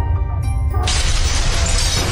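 Intro music over a steady bass beat, with a shattering sound effect crashing in a little under a second in and sustaining a bright, crackling spray of debris.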